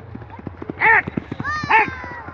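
Hooves of a galloping horse pounding a dirt track in quick beats as it runs past. Two loud shouts from people ring out over the hoofbeats, about a second in and again near the end.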